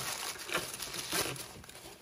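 Crumpled paper packing rustling and crinkling irregularly as hands dig through it, fading slightly toward the end.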